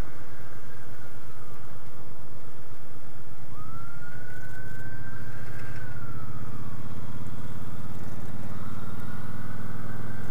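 An ambulance siren wailing in slow rising and falling sweeps, about one every five seconds, over the steady running of the Triumph Bobber Black's 1200cc liquid-cooled parallel-twin engine. The engine note grows stronger about three and a half seconds in.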